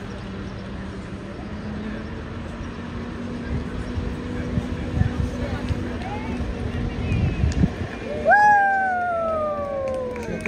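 A slow-moving parade fire engine passes with a steady low engine hum over crowd chatter. About eight seconds in, a loud siren starts suddenly and winds down slowly in pitch.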